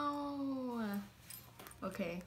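A woman's drawn-out hesitation hum, a long "ummm" that slowly falls in pitch and fades out about a second in. A short vocal sound follows near the end as she starts to speak again.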